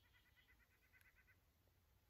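Near silence outdoors, with a small bird's faint trill of rapid repeated notes, about nine a second, lasting a little over a second.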